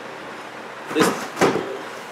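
Two short knocks about half a second apart, one about a second in, as a compressed fire log is handled and picked up.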